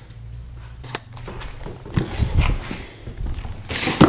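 Footsteps and handling knocks as someone walks across a workshop floor, with a sharp click about a second in.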